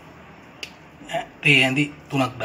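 A person's voice speaking briefly in the second half, after a single short click a little over half a second in; otherwise low room tone.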